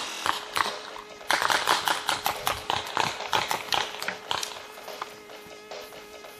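Music track, with a dense run of sharp clicks or pops from just after a second in until about four and a half seconds in, then thinning out.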